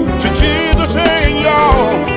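Recorded traditional gospel quartet music: a lead voice singing over bass and drums.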